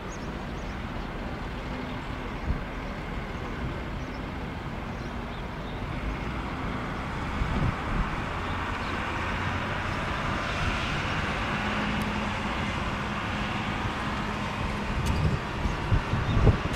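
Airbus A320-214's CFM56 jet engines at low taxi power as the airliner rolls past: a steady jet whine over a low rumble, growing louder from about halfway through.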